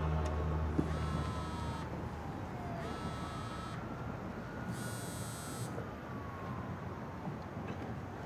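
Mobile phone ringing: three ringtone bursts about a second long, about two seconds apart. Under them a faint tone slowly slides down, up and down again, like a distant siren.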